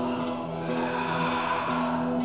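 A live band playing an instrumental passage of steady, sustained held notes.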